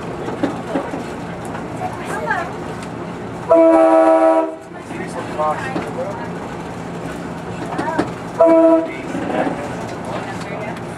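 Budd RDC railcar's air horn sounding a chord of several notes: one long blast about three and a half seconds in and a short one near the end, the warning for the grade crossing just ahead. Under it runs the steady rumble and wheel clatter of the railcar rolling on the track.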